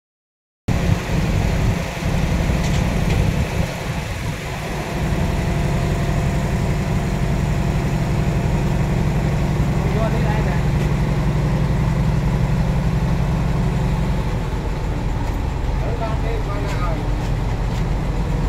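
A diesel truck engine idling, a steady low hum that eases slightly about three-quarters of the way through.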